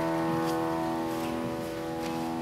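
Grand piano playing an introduction: a held chord slowly dies away.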